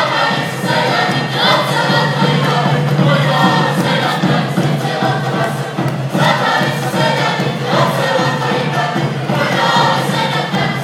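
A group of voices singing a southeastern Serbian folk song together in chorus, with the ensemble's live folk orchestra accompanying.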